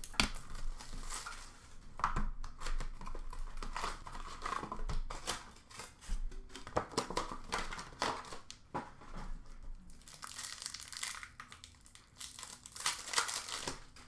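Foil trading-card pack wrappers being torn open and crumpled by hand, in irregular bursts of crinkling and ripping.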